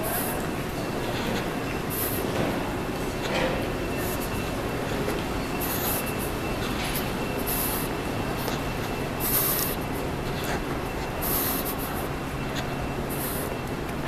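Airport concourse ambience: a steady mechanical hum with a faint high whine running through it, broken every second or two by short hissy rustles.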